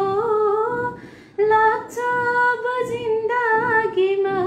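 A woman singing a Nepali song a cappella, holding long notes with vibrato, with a brief breath pause about a second in.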